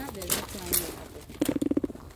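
Indistinct voices talking, with a few light clicks, and a short low pulsing buzz about one and a half seconds in, the loudest sound.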